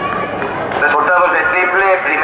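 A man speaking over a public-address system in an echoing hall, starting about a second in, over a steady hum of crowd noise.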